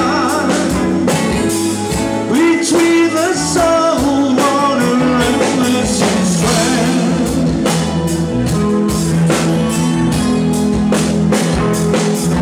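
Live blues-rock band playing: electric guitars and a drum kit with a steady beat, and a singer singing into a microphone over them.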